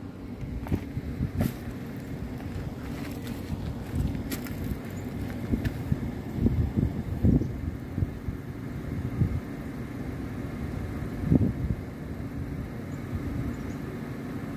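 Steady low outdoor rumble with irregular swells and a few faint clicks.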